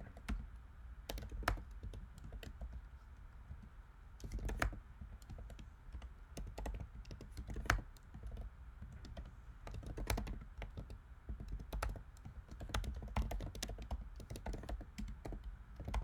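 Typing on a computer keyboard: irregular runs of key clicks with short pauses, a few keystrokes louder than the rest.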